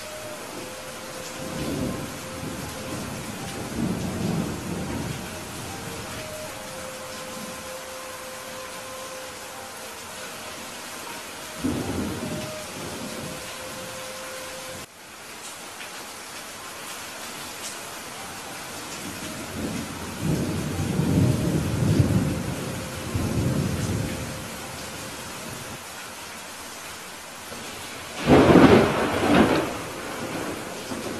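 Steady rain falling during a thunderstorm, with thunder rumbling several times. The loudest and sharpest peal comes near the end.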